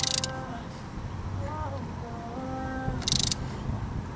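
Socket ratchet clicking in two short bursts, at the start and again about three seconds in, as it tightens a bolt on a new brake caliper.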